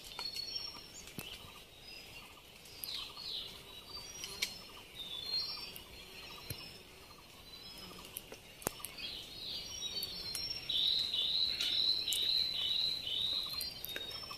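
Wild birds calling in forest, with scattered chirps, then one bird repeating a short note about three times a second for a couple of seconds near the end. A few faint clicks.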